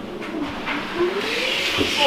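Self-balancing hoverboard rolling across a tile floor and closing in on the microphone: a hum that slowly rises in pitch, with wheel noise growing louder over the last second.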